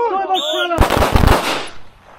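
A shouted voice, a brief high-pitched tone, then a rapid volley of pistol shots from several shooters firing at once, lasting about a second and dying away in echo.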